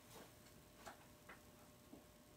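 Near silence: faint room tone with four soft, irregularly spaced clicks.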